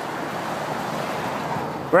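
Steady rushing wind and road noise of a moving car, loud on the microphone while the camera is held up toward the roof.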